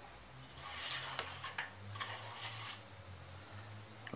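Faint rustling and scraping of a cloth rag wiping a metal engine-oil dipstick as it is drawn out and handled, in a few short rubs about a second in and again around two seconds in.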